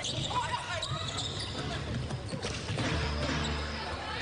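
A basketball being dribbled on a hardwood court, with players' voices calling out on the floor.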